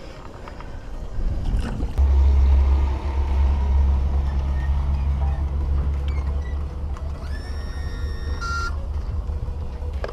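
An engine idling with a steady low rumble, which starts abruptly about two seconds in. Near the end, a steady electronic beep tone sounds for about a second and a half.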